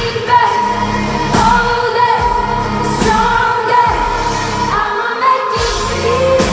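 Live pop music: a female lead singer holding and bending sung notes over a band with drum hits, heard from within the audience.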